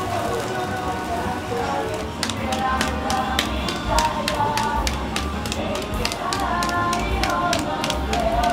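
Raw minced-beef hamburger patty being tossed from one gloved palm to the other, a quick run of slaps several a second from about two seconds in, the usual way of knocking the air out of the meat before it is grilled. Music and voices run underneath.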